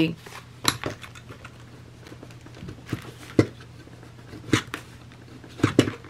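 Scattered sharp clicks and light taps of a metal drill bit being twisted by hand in a hole in thick book board, to burr the hole out, over a low steady hum. There are about half a dozen clicks, the loudest about three and a half seconds in.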